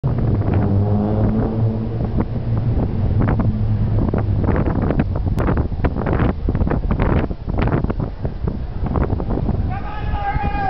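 Street ambience: a vehicle engine humming low and steady for about the first four seconds, under voices and irregular gusts of wind noise on the microphone.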